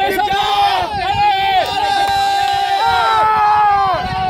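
Spectators shouting encouragement together, several voices yelling at once in long drawn-out calls, loud from the very start.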